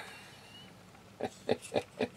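A man's short chuckle: four quick breathy bursts, starting a little over a second in.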